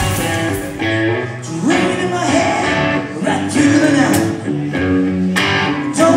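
Live rock band playing, with an electric guitar line leading over the drums and the rest of the band.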